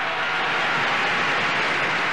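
A large indoor crowd applauding, a steady even wash of clapping between phrases of a speech, on an old, hissy archival recording.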